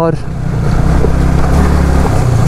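Yamaha R15 V3's single-cylinder engine running at low speed on a rough gravel trail as the bike slows, with a steady hiss of wind and tyre noise over it.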